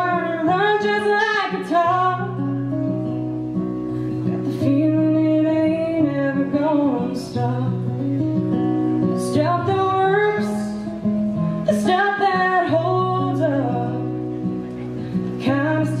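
A woman singing a folk song in phrases over acoustic guitar accompaniment, live on stage.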